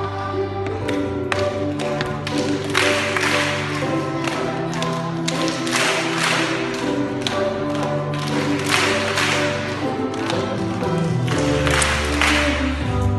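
Music with sustained notes, and a large group clapping along in bursts that come back every few seconds.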